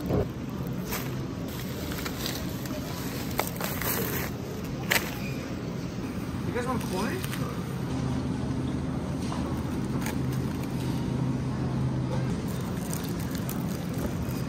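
Supermarket background: a steady low hum with indistinct voices of other shoppers, and a few sharp clicks and knocks near the start and at about three and five seconds in.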